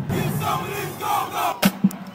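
A break in a marching drumline's cadence, filled with shouting voices, then two single sharp drum strokes near the end.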